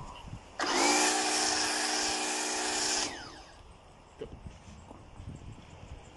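Electric pressure washer running with a snow foam lance on its gun: a steady motor hum under the hiss of the foam spray, starting about half a second in and stopping abruptly after about two and a half seconds.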